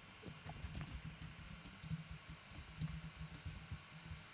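Faint, irregular typing on a computer keyboard: quick dull taps of keys, several a second, with short pauses.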